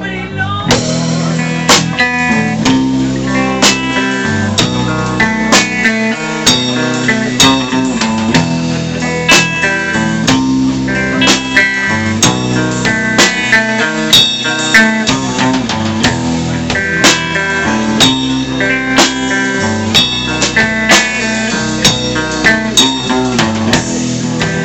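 Live rock band playing an instrumental passage with electric guitar, bass guitar and drum kit, with a steady beat. The full band comes in just under a second in.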